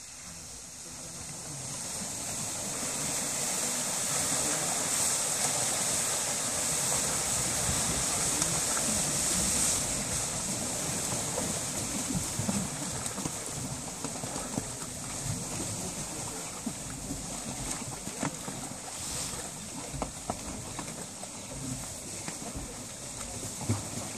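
Water gushing from a wide discharge hose into a pond as golden trout are released from a transport tank. The rush builds over the first few seconds, is strongest up to about ten seconds in, then slowly eases into choppier splashing.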